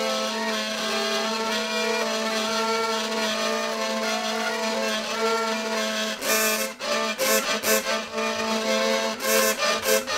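Laser-cut and 3D-printed Nerdy Gurdy hurdy gurdy being cranked and played: a steady drone holds under a melody of changing notes. From about six seconds in, rhythmic buzzing pulses come in, typical of the trompette string's buzzing bridge.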